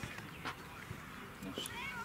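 Faint voices, with a short high-pitched wavering call near the end.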